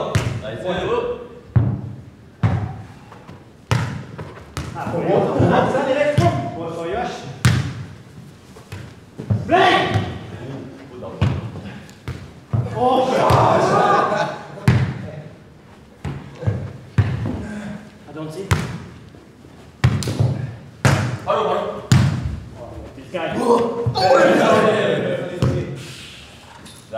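A football being kicked, headed and bouncing on a hard indoor floor in a football tennis rally: sharp single thuds every second or two, echoing in a large hall. Players shout and call out between the touches, with loud cheering near the end as the point is won.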